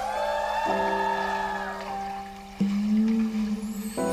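Edited-in background music of sustained tones, with a sound effect that glides up and back down in pitch over the first two seconds; a new, louder low tone comes in suddenly about two and a half seconds in.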